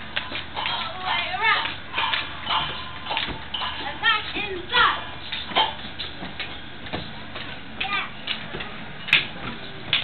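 Young children chattering and calling out, with scattered sharp knocks through the voices.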